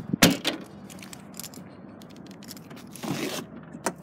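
SUV rear hatch shut with a loud thump about a quarter second in, followed by a smaller knock, scattered clicks and rustling as the car is handled, and a click near the end as a rear side door is worked.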